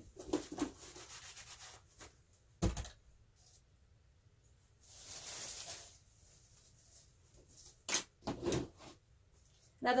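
Plastic cups and a paint palette being picked up and set down on a plastic-sheeted work table: a few scattered knocks and light rustles, with a longer scraping rustle about five seconds in.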